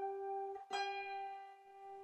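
Two G strings an octave apart on a wire-strung Irish harp ring together with long sustain while they are tuned against each other. A little over half a second in, the lower G is stopped and plucked again; the upper G rings on throughout.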